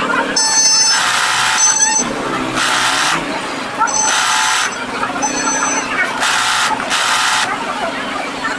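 Industrial sewing machine running in repeated short bursts of half a second to a second, stopping and starting as the operator stitches lace trim along a fabric edge.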